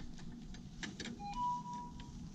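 Faint handling sounds of a rag wiping the nozzles of a soda fountain dispenser: a few light clicks, and a thin steady tone for under a second about midway.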